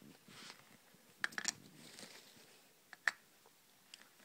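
Small plastic toy figures being handled, giving light clicks and knocks: a quick cluster about a second in and a sharper single click about three seconds in.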